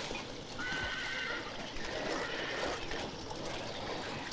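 A horse whinnying faintly about a second in, over steady outdoor background sound.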